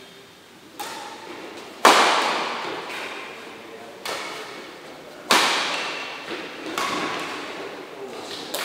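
Badminton rackets striking a shuttlecock in a rally: five sharp hits roughly a second or two apart, the second the loudest, each ringing on in the echo of a large hall.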